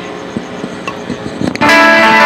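A few faint clicks over a low background, then about one and a half seconds in a loud music track with guitar starts abruptly.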